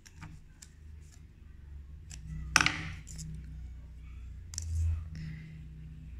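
Small clicks and knocks of sewing things being handled on a tabletop, with one louder clatter about two and a half seconds in and a smaller one near five seconds, over a low steady hum.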